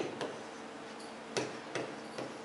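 Chalk tapping and clicking on a blackboard while writing: about five quiet, irregularly spaced taps.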